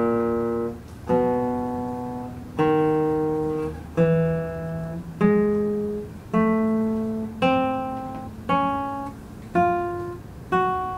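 Nylon-string classical guitar played slowly: two strings plucked together about once a second, each pair left ringing and fading before the next. The notes step through a left-hand finger exercise, one fretting finger changing at a time.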